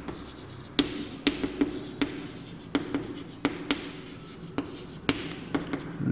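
Chalk writing on a blackboard: a run of irregular sharp taps and scratches as the chalk strikes and drags across the board.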